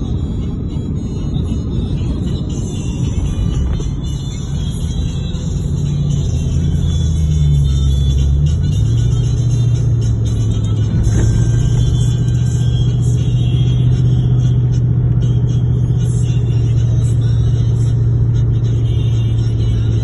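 Steady low engine and road drone inside a moving car's cabin, with music playing under it. The drone gets louder and shifts to a lower, steadier tone about eight seconds in.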